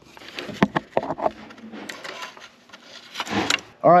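Small clicks and knocks of wire connectors being worked off a terminal block, with a short rustle near the end.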